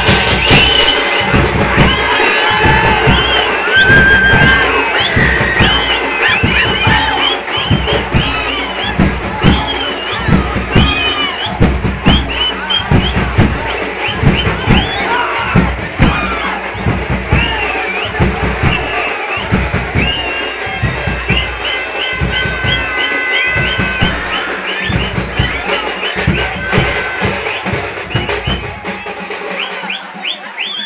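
Loud music driven by a heavy drumbeat, about two strokes a second, under a dense crowd shouting and cheering; the beat weakens near the end.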